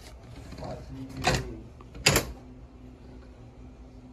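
Plastic-bagged magazine packages being handled on a metal display hook: two short crinkling clatters, about a second in and again a second later, over a faint steady hum.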